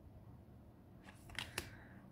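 Quiet room tone, then two short, sharp rasps about a second and a half in as large matte oracle cards are slid over one another in the hands.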